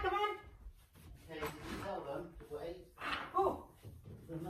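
Speech, much of it faint: a voice talking and calling out, stronger at the start and again a little after three seconds in.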